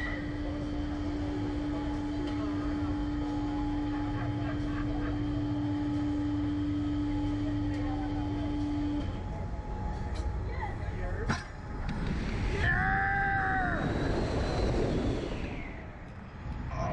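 A reverse-bungee slingshot ride launching: a steady machine hum, then, about eleven seconds in, a sharp click as the capsule is released, followed by rushing wind and a rider's short yell.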